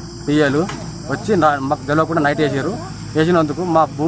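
A man talking, in Telugu, with a steady high-pitched chirring of insects behind him.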